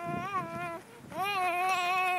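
A young boy's high voice chanting a wavering "uh, uh": one call, then a short break, then a longer, drawn-out one from about a second in.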